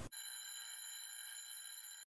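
Faint, steady electronic whine made of several thin high tones held without change, with nothing in the low range.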